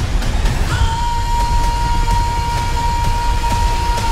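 Film-trailer music: a dense, driving low end under one long, steady high note that comes in about a second in and is held.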